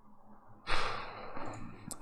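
A man sighing: one long breath out, starting about two-thirds of a second in and fading away over about a second. A short click near the end, just before he speaks again.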